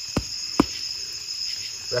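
Two dull thumps about half a second apart as bare hands pat down a mound of loose soil, over a steady chorus of crickets.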